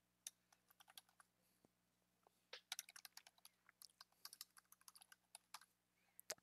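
Faint typing on a computer keyboard: a few scattered keystrokes, then a quick run of keystrokes from about two and a half seconds in until shortly before the end.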